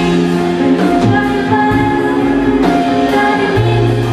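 Live pop band playing loudly, with a woman singing lead into a microphone over drums and keyboards.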